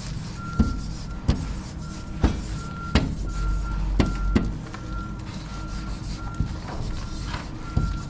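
Short, sharp squeaks and taps of a paint marker's nib on window glass, about ten of them, as letters are drawn. Behind them a vehicle's reversing alarm beeps steadily a little under twice a second over a low engine rumble.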